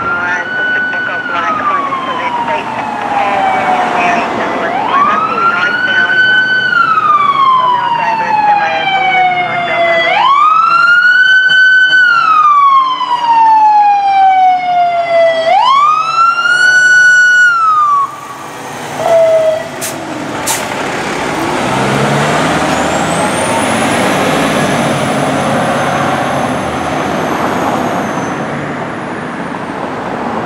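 Fire engine siren on a slow wail: each cycle climbs quickly to a high pitch, holds briefly, then slides down over about three seconds, four times in a row before it stops about two-thirds of the way through. After that comes the steady rumble of the fire engine's engine and street traffic.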